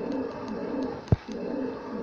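Low cooing calls in two phrases of about a second each, broken by a single sharp knock about a second in.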